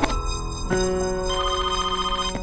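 A mobile phone ringtone, a fast-warbling electronic ring that starts a little over a second in, over sustained synth music.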